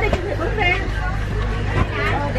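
Chatter of passengers in a crowded high-speed ferry cabin, voices overlapping over a steady low hum of machinery.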